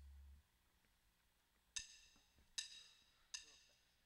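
Three sharp, ringing percussive clicks, evenly spaced about three-quarters of a second apart: a band's count-in just before a song starts. A low hum cuts off shortly before the clicks.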